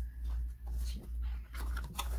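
Cardboard inserts and styrofoam packing being handled in an opened box: scattered rustling and rubbing, with a brief faint squeak near the start.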